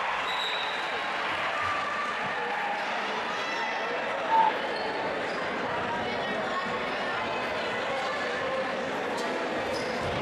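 Spectator chatter and murmur echoing in a school gymnasium, steady throughout, with one brief louder voice about four seconds in.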